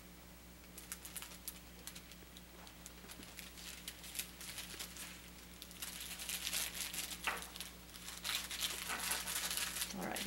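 Crinkling and rustling of the sterile paper wrapping of a Foley catheter kit as the sterile glove packet is handled. It is light at first and grows busier and louder about six seconds in.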